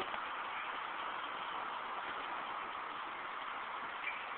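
Steady, even hiss of outdoor street ambience, distant traffic with no distinct events.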